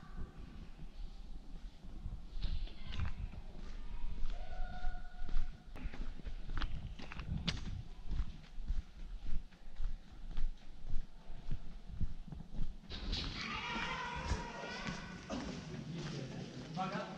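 Footsteps on a stone-paved path, irregular knocks and scuffs, with other people's voices joining about 13 seconds in.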